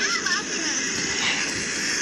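Roller coaster ride noise played back through a phone's speaker: a steady rushing rumble, with a brief voice near the start.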